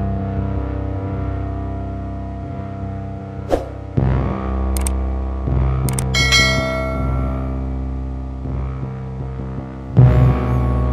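Background music of sustained low tones with a fresh entry about four seconds in. Around six seconds in, a pair of clicks and a bright ringing chime sound from a subscribe-button animation.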